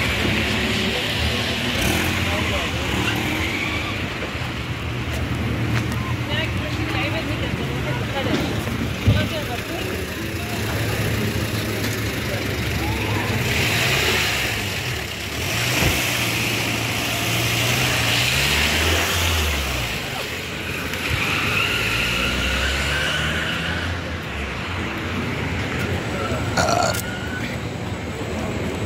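Street ambience: car engines running on the road alongside, with people's voices and an occasional knock.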